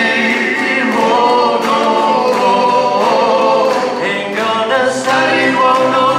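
Several voices singing together in harmony, with long held notes.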